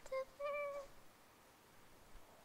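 A cat meowing twice in the first second: a short mew, then a longer one at a nearly level pitch.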